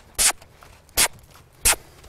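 Footsteps scuffing and crunching in the sandy dirt of a round corral: three evenly spaced steps a little under a second apart.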